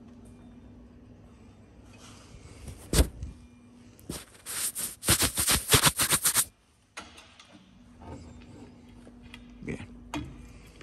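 Hand tools working on a gyroplane's rotor-mast fittings. A sharp metallic knock comes about three seconds in. From about four seconds in there is a fast run of clicks for about two seconds, which stops abruptly.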